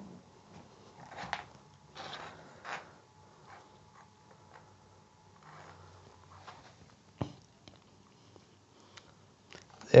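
Quiet tabletop handling of small electronics and wires: faint soft rustles and taps as a tiny radio receiver and its leads are picked up and moved, with one sharp click about seven seconds in.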